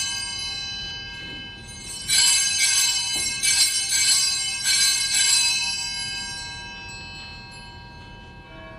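Altar bells rung at the elevation of the consecrated host. A ring already fading, then two more bright, shimmering rings about two and four and a half seconds in, each dying away slowly.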